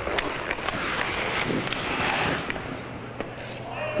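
Ice hockey skates scraping and carving on rink ice, with scattered sharp clicks of sticks and pucks.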